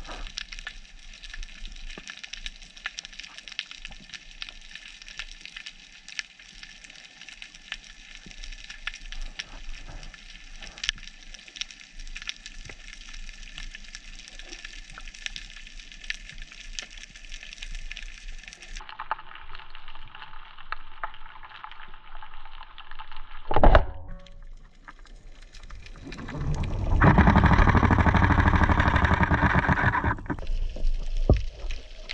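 Underwater crackle of many small clicks. About two-thirds of the way through, a speargun fires with one sharp, loud crack. A loud, rough rushing noise follows for the last few seconds.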